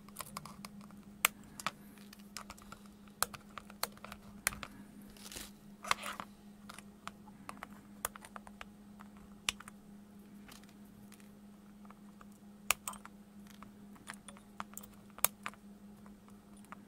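Scattered sharp clicks and taps from a small circuit board and hand tools being handled on a plastic cutting mat, about ten clear ones at irregular intervals. A steady low hum runs underneath.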